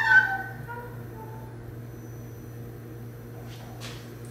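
A clamshell heat press being pulled shut, with a brief falling squeal right at the start. A steady low hum follows for the rest.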